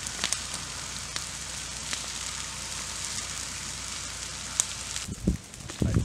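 Leaf-litter fire burning on a forest floor: a steady hiss with scattered sharp crackles and pops. Near the end the fire sound falls away and a couple of dull thumps are heard.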